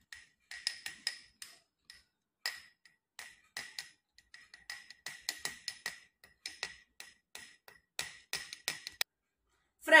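A metal spoon clinking against a drinking glass as it stirs a foaming mixture: a run of faint, light clinks, about three a second and unevenly spaced, each with a short ringing tone, stopping about a second before the end.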